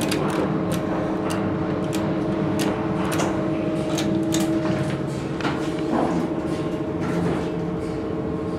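Cab of a 1988 Dover Impulse hydraulic elevator: a steady hum runs throughout while call buttons are clicked, and the car door slides shut, with a soft knock about six seconds in.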